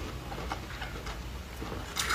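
Soft chewing of a mouthful of frozen foam ice, with a few faint small clicks.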